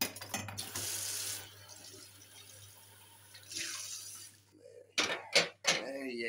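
A kitchen tap runs into a stainless-steel sink. The flow is strongest for the first second and a half, then fades, and a second short run comes a few seconds later. A few sharp knocks follow near the end.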